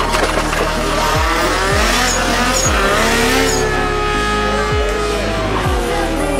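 Electronic dance track with a deep kick drum, mixed with a race engine revving and tyres squealing in a drag-strip burnout.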